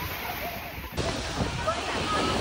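Beach surf washing in with faint, scattered voices of distant beachgoers over it; the background changes abruptly about a second in.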